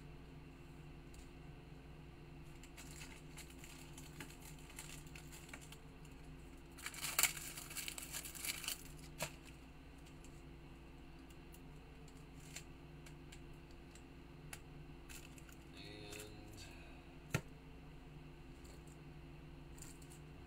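Plastic packaging crinkling and tearing as a pack of top loaders (rigid plastic card holders) is opened, loudest for about two seconds near the middle, with a few light clicks and one sharp click near the end, over a steady low hum.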